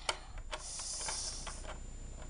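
Faint clicks and taps of a small plastic toy figure being handled against a plastic playset, with a soft hiss lasting about a second near the middle.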